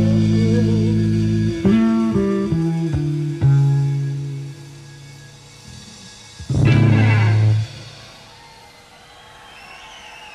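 Rock band with bass, electric guitars and drums ending a song live: a loud held chord cuts off, then a short run of notes steps down in pitch. A final loud chord hit with a crash comes about six and a half seconds in and is cut off about a second later.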